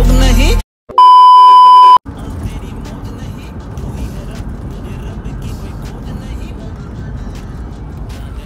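A song cuts off, and after a brief gap a loud, steady electronic beep sounds for about a second. It gives way to steady road and engine noise inside a car moving along a highway.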